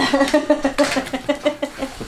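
A woman laughing: a fast, even run of short "ha"s at a near-steady pitch.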